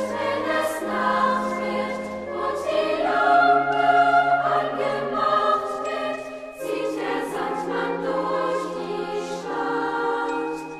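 A children's choir singing a German song in unison, with piano accompaniment, in long held notes over a changing bass line.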